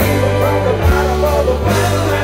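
Live rock band playing loud through a PA: electric guitars over bass and drums, with a lead melody line bending in pitch.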